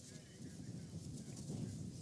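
Faint outdoor background rumble and hiss, steady and without any distinct event.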